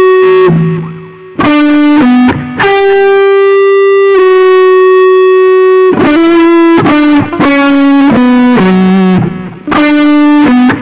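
Distorted electric guitar playing a single-note lead melody, one note at a time, with several long sustained notes. The sound briefly drops away about a second in and again just before the end.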